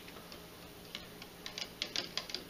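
Faint, irregular light clicks and taps, more frequent in the second half, from the pH meter's probe knocking against the cup of beer as it is moved.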